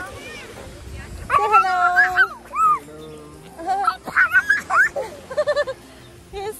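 A small child's high-pitched cries and squeals: long held wails, then rising squeals, ending in a quick run of short yelps.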